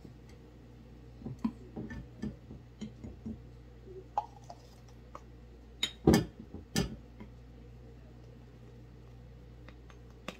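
Plastic measuring cup scooping flour from a glass jar: scattered light clicks and scrapes, then three sharper knocks of the cup against the jar a little after halfway.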